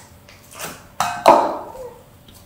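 Sticky green slime being worked and pulled apart by hand, with a sharp pop about a second in as it stretches, followed by a brief wet sound.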